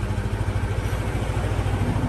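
An engine idling steadily nearby, a low, even hum with a fast regular pulse.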